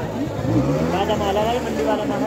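Market chatter of several voices, with a motor engine running close by whose pitch rises about half a second in and then holds steady.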